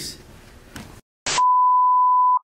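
Broadcast test tone for a colour-bar 'technical difficulties' card. After a moment of dead silence and a short hiss, a single steady beep starts about 1.3 seconds in and holds at one pitch.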